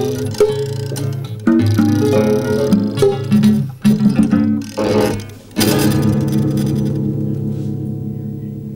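Two prepared classical guitars, their strings fitted with nuts, bolts, fishing weights and alligator clips, playing a run of plucked notes. About five and a half seconds in, a last chord is struck and rings on with a gong-like tone, slowly fading.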